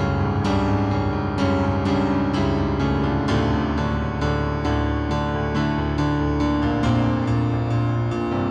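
Keyboard playing slow piano chords over a held bass, notes struck about twice a second.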